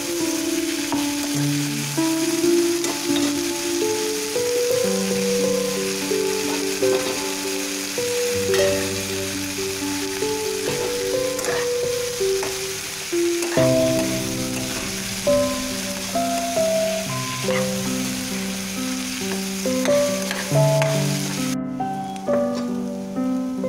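Vegetables sizzling as they fry in oil in a kadai and are stirred with a spatula, under background music with a melody; the sizzle cuts off just before the end.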